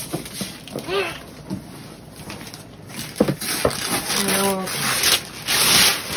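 Cardboard box flaps being pulled open and newspaper packing rustled and crumpled, with two sharp knocks a little after three seconds in and the loudest crinkling near the end. Short vocal sounds break in between.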